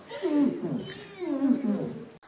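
Excited wordless human voices: several drawn-out exclamations sliding down in pitch, mixed with laughter.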